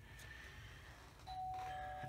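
Doorbell chime sounding a two-note ding-dong, a higher note followed by a lower one, ringing on. It comes in a little past halfway through, after a quiet stretch.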